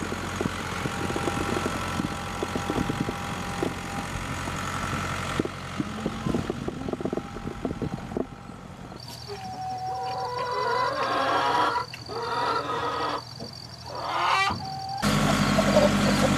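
A farm tractor's engine running steadily for the first half, fading under short pitched clucking calls from loose hens in the second half.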